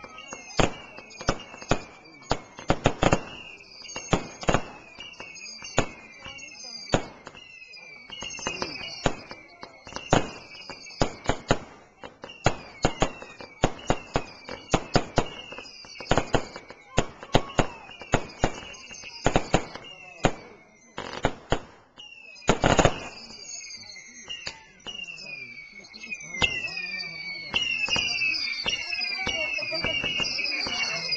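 Fireworks display: a rapid, irregular run of bangs from bursting shells, several a second, with one especially heavy blast about three-quarters of the way through. Many short whistles falling in pitch run alongside the bangs and crowd together into a near-continuous shrill whistling in the last few seconds.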